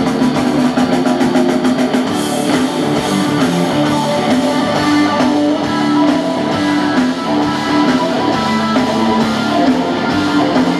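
Live rock band playing: electric guitars and bass over a drum kit, with a steady beat.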